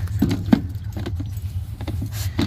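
Handling noise of a clear plastic storage tub and jingling car keys: a few short clicks and knocks, the loudest about half a second in, over a steady low rumble.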